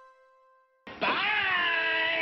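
The last held notes of the closing theme music fade away. A little under a second in, a single long, drawn-out call starts suddenly, its pitch dipping and then holding level.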